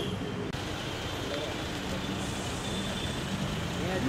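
Street traffic noise: a steady low engine rumble from road vehicles, with faint voices now and then.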